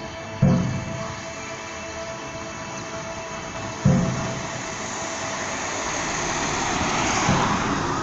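The karakuri clock tower's show music plays as steady held tones, with two sudden low booms about three and a half seconds apart. A rush of passing-traffic noise builds toward the end.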